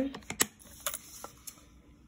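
A few light plastic clicks and taps as a plastic sports water bottle with a flip-top lid is handled, the sharpest about half a second in and softer ones after.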